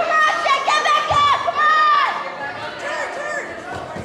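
Spectators shouting encouragement in a gym, high-pitched voices calling out over each other, loudest in the first two seconds and then dropping off. A dull thump about a second in.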